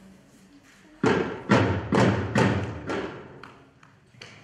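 Small double-headed drum beaten with a wooden stick: five strikes about half a second apart, each ringing briefly, the last ones softer.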